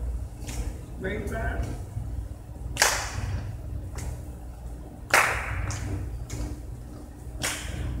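Line dancers on a hard hall floor: a few sharp smacks, the two loudest about three and five seconds in, each ringing briefly in the hall's echo, over a steady low hum. A voice calls "break" about a second in.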